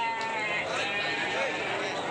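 Goats bleating over the steady chatter of a crowd of people, with one bleat right at the start and another near the end.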